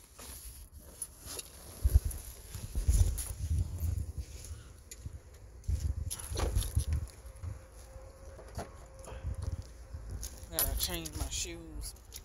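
Handling noise from a phone held close to the body while it is moved about: uneven low rumbling thumps and scrapes on the microphone, sharpest about two and three seconds in. A short voice comes near the end.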